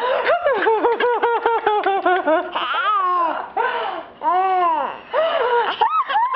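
Six-month-old baby laughing: a quick run of short giggles, about six a second, for the first two seconds, then three longer drawn-out laughs.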